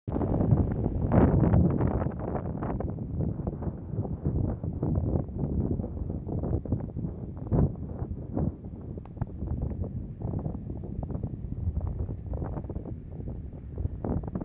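Wind buffeting the microphone in irregular gusts, a rumbling flutter low in pitch, loudest about a second in.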